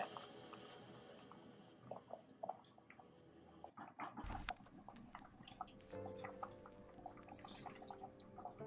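Half a lemon squeezed by hand over a pan of sauce, the juice dripping in as faint scattered drips and small clicks, with a single thump about four seconds in.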